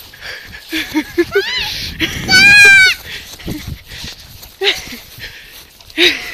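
Husky puppy vocalizing in excited play: short whiny calls and a loud yowl with a warbling, wavering pitch lasting under a second about two seconds in.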